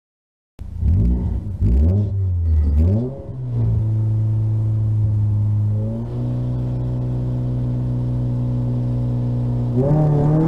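VW Lupo GTI rally car's four-cylinder engine, heard from inside the cabin, starts about half a second in with a series of quick rev blips, then holds steady raised revs while waiting at the stage start. Near the end the revs begin to climb.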